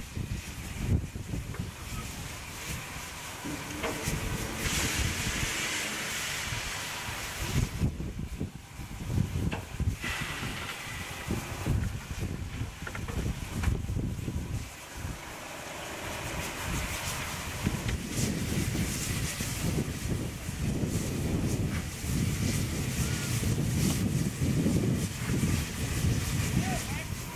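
Gusty wind buffeting the microphone, with stretches of steady hiss from steam locomotives standing in steam.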